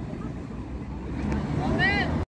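City street traffic: a steady low rumble of passing cars. A brief high voice rises near the end.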